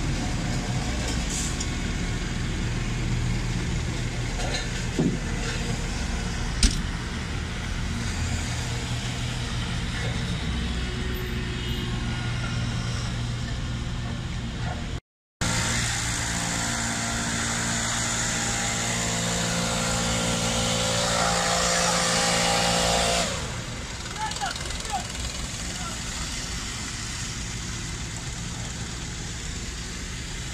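Diesel engine of a small wheel loader running steadily close by, with a couple of sharp knocks early on. After a short break in the sound it runs louder with a bright hiss for several seconds, then drops back to a lower steady level.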